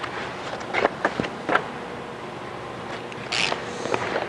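Vinyl wrap film and its paper backing rustling and crinkling as they are handled and laid on the panel. There are a few light clicks about a second in and a short hissing rustle near the end, over a steady faint hum.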